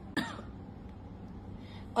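A woman gives one brief throat clear just after the start, then quiet room tone.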